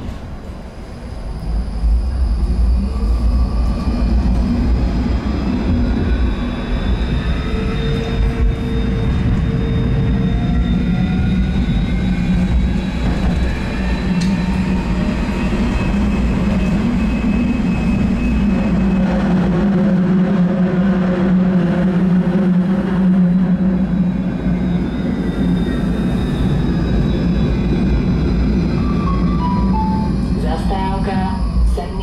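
Electric tram heard from inside near the front, getting louder as it pulls away about a second and a half in, then running along the track: a steady rumble of wheels on rails under electric motor whine that glides up and down in pitch with speed. Near the end the whine falls in steps as the tram slows.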